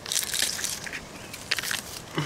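Crackling and crunching of dry leaves and plant stems as a hand pushes into the undergrowth to pick morel mushrooms, with a sharper crackle about a second and a half in.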